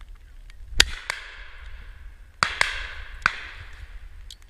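Five shotgun shots from the line of guns, the loudest about a second in, then a close pair and a single shot later on, each trailing off in an echo. Wind rumbles on the microphone throughout.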